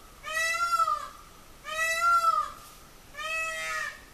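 A farm bird calling over and over: three drawn-out, arching cries about a second and a half apart.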